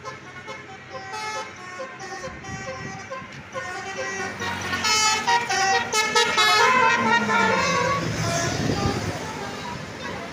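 Tour bus's 'basuri' musical air horn playing a melody of short stepped notes, growing louder as the bus approaches and loudest as it passes.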